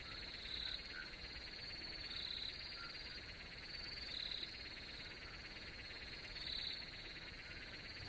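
Faint night ambience of crickets and frogs: steady high chirring, with a slightly louder call repeating about every two seconds.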